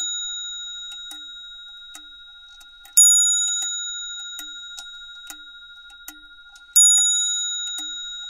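Clock bell ringing: struck about three seconds in and again near seven seconds, each strike ringing at several clear pitches and fading slowly, with the ring of an earlier strike dying away at the start. Under it a clock ticks softly about twice a second.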